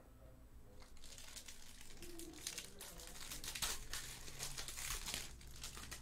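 Foil trading-card pack wrapper crinkling and tearing as it is opened by hand. The crackling starts about a second in and is loudest in the second half.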